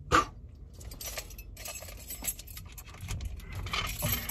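A bunch of car keys jingling, with a sharp click at the start and then light metallic clicks and taps as a key is worked into a yellow club-style steering-wheel lock to unlock it.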